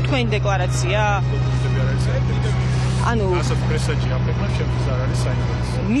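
Voices talking in Georgian in short stretches, over a steady low hum.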